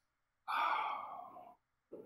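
A person's sigh about half a second in: one breath out lasting about a second and fading away.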